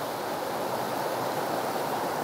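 Steady rushing of flowing river water, an even hiss with no distinct events.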